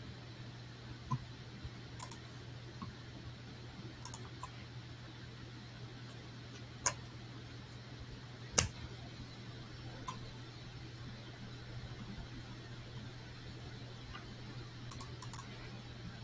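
Scattered faint computer mouse clicks over a steady low hum, with two louder clicks about seven and eight and a half seconds in.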